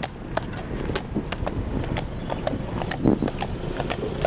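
Horse's hooves clopping on a tarmac road at a walk, about two to three hoofbeats a second, while it draws a cart, over a steady low rumble.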